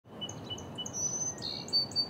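Songbirds chirping: several series of short repeated notes at different pitches, over a low, steady background rumble.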